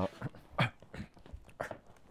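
A man laughing softly: a few short, breathy chuckles that trail off.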